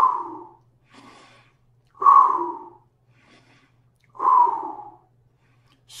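A man taking three deep breaths about two seconds apart, each a faint inhale followed by a louder exhale that fades away. The first exhale comes right at the start. A faint steady hum lies underneath.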